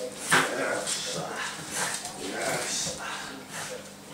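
A six-week-old American Bulldog puppy growling and yapping in short bursts as it grips and tugs a rag toy, with scuffling noise from the tug.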